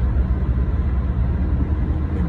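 Steady low rumble of road and engine noise heard inside a moving car's cabin.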